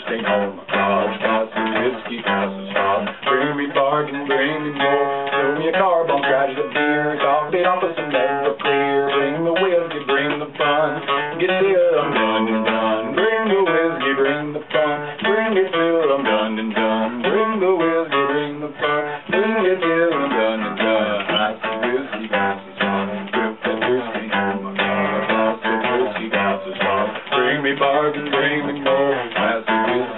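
Acoustic guitar strummed steadily, with chords ringing between strokes. A wavering melody line runs over the chords from about four seconds in until about twenty seconds in.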